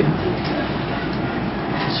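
Steady background noise: an even hiss with no tone or rhythm.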